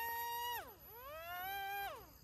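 Brushed electric motors and propellers of an XK A100 J-11 RC jet whining: a steady pitch for about half a second, falling away, then rising slowly again before cutting off near the end. The motors are slow to come up to speed.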